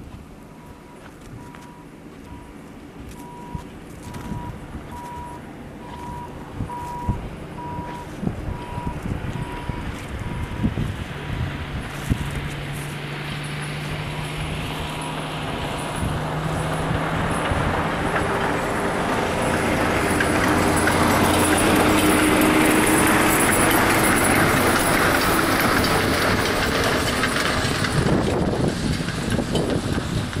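Heavy diesel truck engine running, growing louder over several seconds and then easing off. Footsteps crunch in snow, and a faint, steady beeping sounds during the first half.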